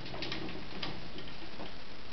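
A few faint, irregular light ticks as a wooden dowel is handled against a metal compression pole, over steady room hiss.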